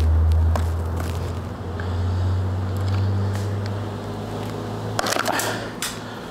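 Screwdriver and hand clicks and knocks at a dirt bike's battery and terminals, with a cluster of sharper clatters about five seconds in, over a steady low machine hum.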